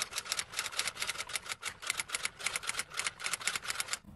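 Typing sound effect: a fast, even run of key clicks, about eight or nine a second, that stops abruptly at the end.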